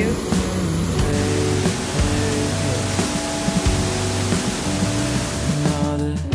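Steady rush of a waterfall pouring through a rock gorge, under background music; the water sound cuts off suddenly near the end.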